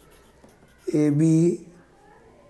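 Pen writing on paper, faint scratching strokes in the first second, with one spoken word about a second in.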